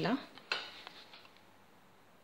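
A single sharp clink about half a second in, ringing and fading over about a second, followed by a few faint taps: a small spoon knocking against a glass mixing bowl.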